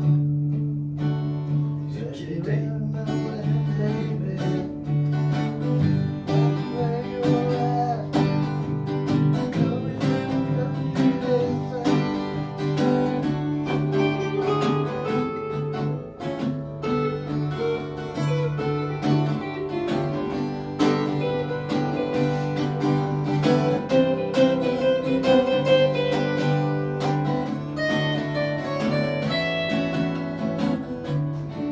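Two acoustic guitars played together with no singing: strummed chords under a picked single-note melody line.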